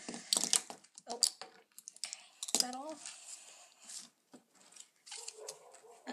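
Several plastic Sharpie paint markers clicking and clattering against each other as they are shuffled by hand on a sketchbook page: a run of short, uneven clicks.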